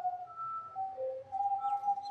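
High, clear whistle-like tones holding one note at a time and stepping up and down between a few pitches, like a slow whistled tune.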